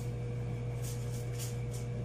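A steady low hum runs throughout, with a few faint, light ticks and rustles about a second in.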